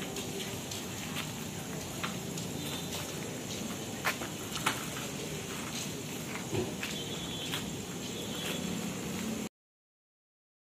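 Outdoor night background: a steady high hiss under low noise, with a few scattered sharp clicks and knocks, the loudest two about four and four and a half seconds in. The sound cuts off abruptly just before the end.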